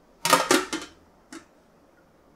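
Stainless steel lid clattering against a stainless steel tray: two sharp clanks close together with a short ring, then a light tap just before halfway.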